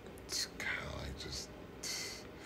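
A man's soft, half-whispered speech sounds and breaths, with a short hiss about half a second in and another near the end.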